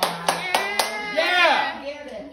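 A short run of hand claps, about four, stopping about a second in, over the excited voices of a small group of people.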